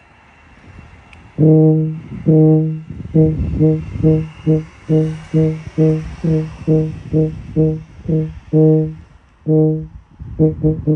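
E-flat tuba playing one low note over and over in a tonguing exercise. It starts about a second and a half in with two long notes, then a run of shorter, separately tongued notes in a steady rhythm, and ends with two more long notes.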